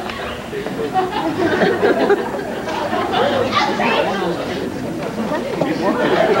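Indistinct chatter of many voices talking at once, with no single clear speaker.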